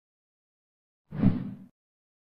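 A single soft squelching sound effect for the animated needle working on pus-filled skin bumps. It starts a little past a second in and fades out within about half a second.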